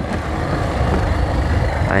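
Small motorcycle engine running steadily while riding along a dirt track, a low rumble with rushing noise over it.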